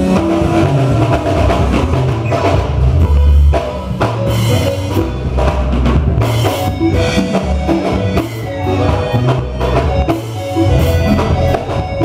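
Live band playing upbeat Congolese gospel dance music: a drum kit with bass drum and snare driving a steady beat over a moving bass line.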